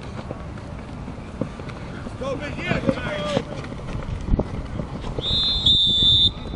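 Distant shouting of players on a flag football field, then a steady high whistle for about a second near the end, a referee's whistle stopping the play.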